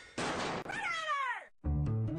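Cartoon sound effects: a short noisy burst, then a falling, meow-like cry that sweeps down in pitch and fades. Low musical notes start just before the end.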